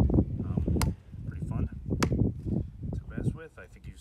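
Rigid PVC pipe and fittings clicking and knocking together as the pieces are dry-fitted by hand: two sharp clicks a little over a second apart.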